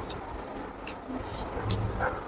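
Mouth sounds of someone chewing rice and pork eaten by hand: short wet smacks and clicks, several a second, over a steady low rumble.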